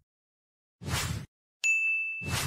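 Animated logo sound effect: a short whoosh about a second in, then a bright metallic ding near the end that holds one steady high note and keeps ringing.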